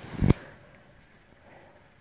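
A single brief, dull thump about a quarter of a second in, then quiet room tone.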